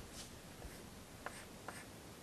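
Chalk drawing on a blackboard: faint scratching strokes with two light ticks of the chalk about halfway through.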